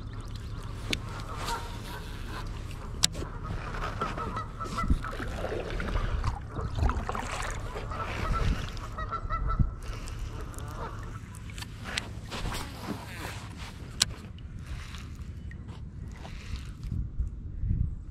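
Faint, repeated honking calls of distant waterfowl, over a steady low rumble of wind on the microphone, with a couple of sharp clicks from the baitcasting rod and reel being handled.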